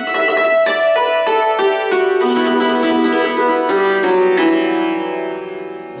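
Hammered dulcimer's metal strings struck with cloth- or felt-covered hammers, playing a quick run of single notes that ring on and overlap, then fade away near the end.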